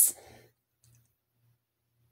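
A spoken word trailing off with a short breath, then near silence with a faint low hum and a few tiny faint clicks.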